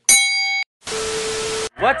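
Editing sound effects closing a video intro. A bright metallic ding rings with several steady tones for about half a second and cuts off. After a short gap comes a burst of hiss carrying a steady tone, which stops abruptly just before a man starts talking.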